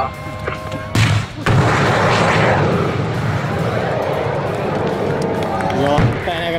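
Surface-to-air missile launch, a Mistral: a sudden blast about a second in, followed by the long rushing roar of the rocket motor that slowly fades as the missile flies out.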